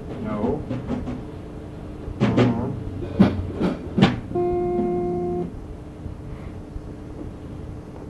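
Musical instrument sounds on a tape recording: a few short sounds bending in pitch, then three sharp hits about half a second apart, then one steady note held for about a second.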